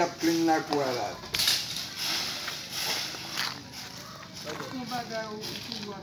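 A broom sweeping dirt and gravel in several rough, scratchy strokes, with voices talking at the start and again near the end.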